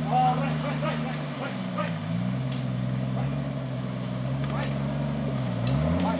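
Off-road 4x4's engine working at crawling speed as it climbs over rocks and logs, the revs dipping about two seconds in, holding lower, then rising again near the end.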